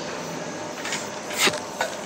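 Steady gym room noise, with two brief sharp sounds close together about a second and a half in.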